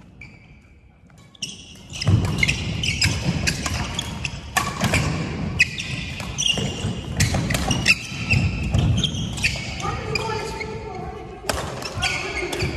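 A badminton doubles rally on a wooden sports-hall floor, starting about two seconds in: sharp racket hits on the shuttlecock, sneakers squeaking and thudding footsteps as the players move. A player's voice rises near the end.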